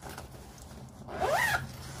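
A zipper pulled once, about a second in, giving a short rising rasp.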